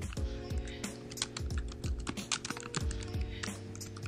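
Typing on a computer keyboard: an irregular run of quick keystrokes entering a short commit message, over steady background music.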